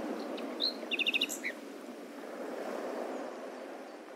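A songbird chirping over a faint, steady background hiss: one rising chirp, then a quick run of about five short high notes and a falling note, all about a second in.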